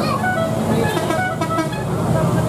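Engines of a line of cars climbing past, a steady low hum, with people's voices over it.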